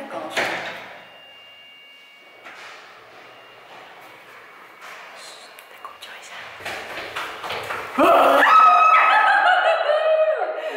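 A lift's electronic chime or beep: one steady tone with a couple of higher overtones, lasting about a second and a half shortly after the start. Near the end a loud, pitched woman's voice, singing or calling out, takes over.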